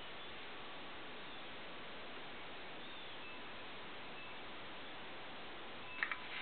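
Steady low hiss of room and recording noise with no distinct sound events.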